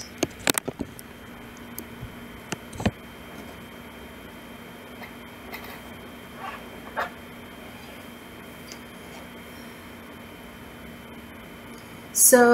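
Handling noise from a camera being picked up and repositioned: a quick run of clicks and knocks in the first second and two more knocks around the third second. After that, quiet room tone with a steady low hum and a few faint taps.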